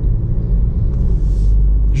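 Steady low rumble of road and drivetrain noise inside a car's cabin as the car accelerates gently from about 30 to 40 km/h. A brief soft hiss comes about a second in.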